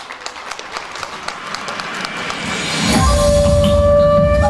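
Audience clapping, growing louder, then about three seconds in the song's instrumental intro starts with a long held note over a heavy bass.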